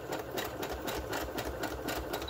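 Brother electric sewing machine running a zigzag stitch at speed, its needle working in a rapid, even rhythm.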